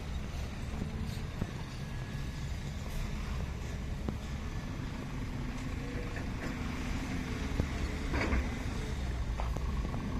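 Steady low rumble of heavy construction vehicles, such as a dump truck, running, with a few short sharp knocks.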